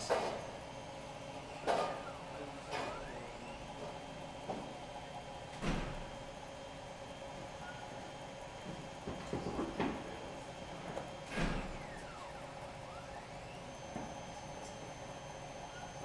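TORCAM CNC mill running a GRBL carve job: the spindle motor hums steadily while the stepper-driven axes make repeated moves, each rising and then falling in pitch as it speeds up and slows down. The loudest moves come about two, six, ten and eleven seconds in.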